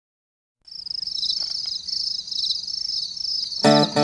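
Crickets chirping in a pulsing high trill, starting about half a second in. Near the end a country song with guitar comes in loudly over the chirping.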